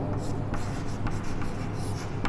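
Chalk scratching on a chalkboard as words are written, in short irregular strokes, over a low steady hum.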